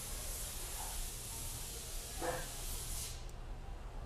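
Steady high hiss over a low hum, with a brief vocal sound about two seconds in; the hiss drops away suddenly about three seconds in.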